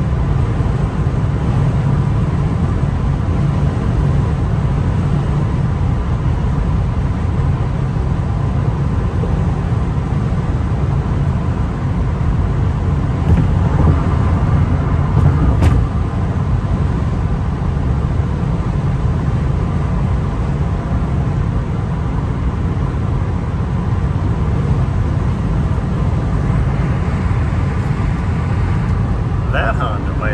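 Interior noise of a 2001 Nissan Maxima GLE cruising at freeway speed: a steady low rumble of tyres and road with the V6 engine's hum underneath, swelling slightly about halfway through.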